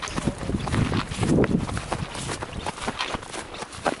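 Footsteps in snow: a quick, irregular run of crunching steps as people walk across a snowy field.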